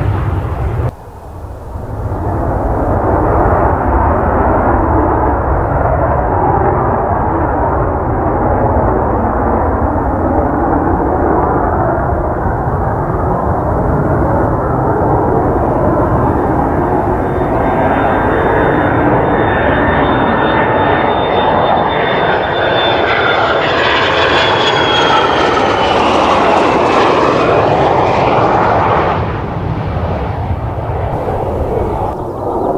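Mitsubishi F-2B fighter jets' F110 turbofan engines running loud and steady on low landing approaches and touch-and-go passes. A high whine slowly falls in pitch over the second half as a jet passes close. There is a brief dip about a second in.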